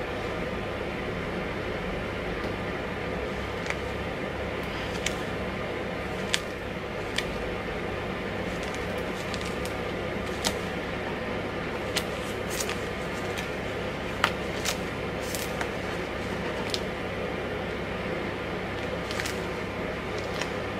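Steady background hiss and hum with irregular light ticks, one every second or two, as a fanned stack of paper nail-decal sheets is handled.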